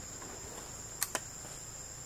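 Steady high-pitched chorus of forest insects, two thin tones held without a break. Two short sharp clicks come close together about a second in.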